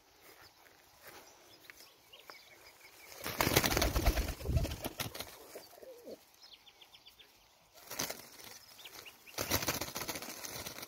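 Sporting pigeons flapping their wings among a tree's leafy branches: a long flurry of rapid wingbeats about three seconds in, then shorter flurries near eight seconds and at the end.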